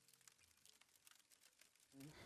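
Near silence: the last of an acoustic guitar chord dies away in the first moment, leaving only faint ticks.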